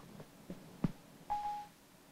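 A short single-note electronic chime from Siri on an iPad Mini, a steady beep of about half a second as Siri stops listening to the spoken command. A brief click comes just before it.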